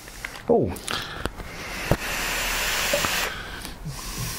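Long breathy hiss of a lung hit on a sub-ohm dripping atomizer with a 0.14 ohm coil at 90 watts. The hiss swells for about two seconds and breaks off a little after three seconds in, with a couple of light clicks.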